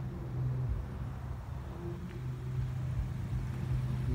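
Wind buffeting a phone microphone as a storm moves in, heard as an uneven low rumble over a steady low hum.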